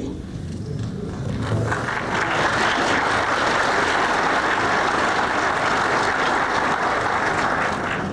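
Audience applauding, building up over the first two seconds and then holding steady.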